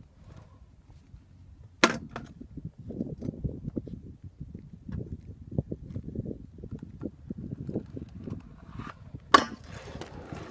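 Kick scooter in use on asphalt: a sharp smack about two seconds in, then several seconds of wheels rolling over the rough pavement, and a second sharp smack near the end. The sounds belong to a trick attempt off a ledge that does not come off.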